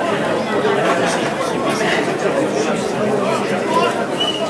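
Many overlapping voices chattering at once, with no single voice standing out.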